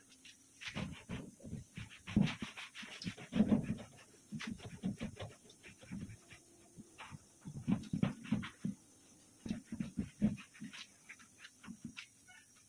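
Gloved hand rubbing and wiping wet paint in swirls across a steel cabinet door panel: quick, uneven swishing strokes in bursts, several a second.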